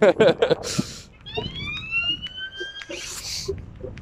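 Emergency-vehicle siren giving a single rising whoop: one upward glide that levels off and lasts about a second and a half. A short hiss follows it.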